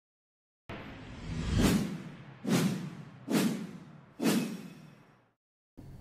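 Four whoosh sound effects, about a second apart. The first builds up gradually, and the next three come in sharply and die away.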